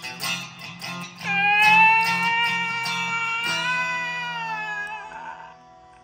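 Stratocaster-style electric guitar with single-coil pickups: a few quick picked notes, then a chord struck about a second in and left ringing with a slight waver in pitch, fading out near the end.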